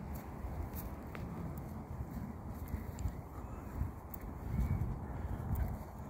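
Wind rumbling on a phone microphone beside a lake, swelling in a gust near the end, with faint rustling of grass and leaves as the phone is moved and a few light clicks.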